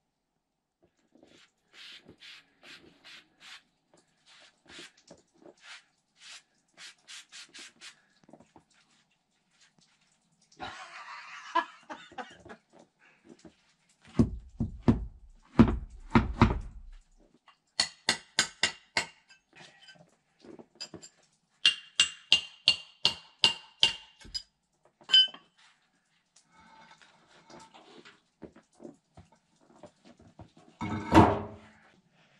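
Paving slabs being lifted and stacked in snow, with heavy thuds between about fourteen and seventeen seconds in. Runs of short, quick crunches or clicks before and after the thuds.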